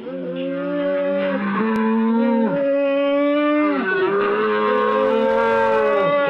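A long, deep, drawn-out roar, captioned a "demonic roar". It is held on a few steady pitches that step to new ones about every one to one and a half seconds.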